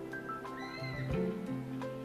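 Live concert band with orchestra playing a slow instrumental passage between sung lines: sustained chords, a few struck notes, and a high wavering note about halfway through.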